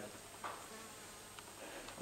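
Faint steady hiss of workshop room tone, with one small faint tick late on.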